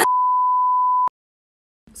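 A single steady 1 kHz censor-style bleep tone lasting about a second, added in editing where a remark is cut off, ending abruptly in dead silence.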